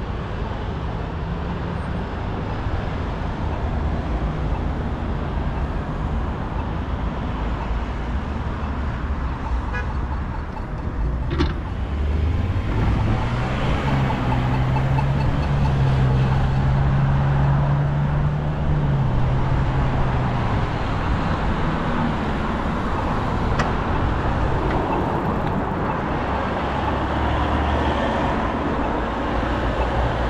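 Road traffic at a busy city intersection, with cars passing close by. About twelve seconds in, a low engine hum rises and holds for several seconds before fading out.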